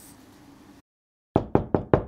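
A quick, even run of loud, sharp knocks, about five a second, starting about a second and a half in.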